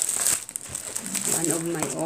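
Packaging crinkling and rustling as it is handled during an unboxing, with a person's voice in the second half.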